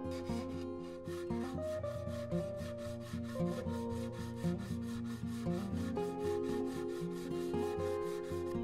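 Sandpaper rubbed back and forth by hand against CNC-cut western red cedar, in quick repeated strokes, under background music with held notes.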